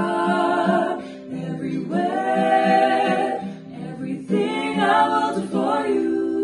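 Three voices, two female and one male, singing close harmony in long held notes, in three phrases, over a softly played acoustic guitar.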